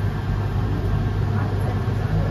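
A steady low engine rumble, like a large engine idling, with faint voices in the background.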